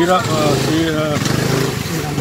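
A man's voice speaking, with long drawn-out syllables.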